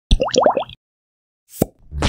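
Channel intro logo sound effect: four quick rising bloops within the first second, then a single short, sharp hit about one and a half seconds in.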